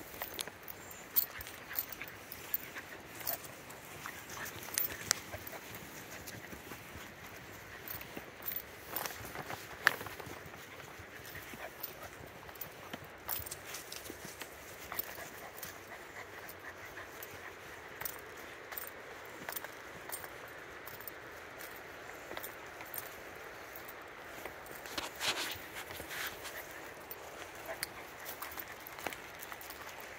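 Footsteps and puppy paws on a dirt and gravel trail: irregular light crunches and clicks over a faint steady hiss.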